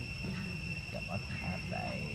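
Steady high-pitched insect drone, with a run of short voice-like sounds over it from about a quarter second in.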